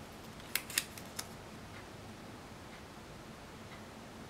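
Four light, sharp clicks in quick succession about half a second to a second in, from fingers handling a paper planner sticker, then only faint room tone.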